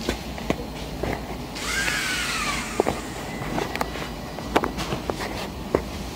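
Small electric motors of a toy robot car whirring in a short burst from about one and a half to three seconds in, the pitch rising and then falling as they speed up and slow down. Scattered sharp clicks and taps stand out over a low steady rumble.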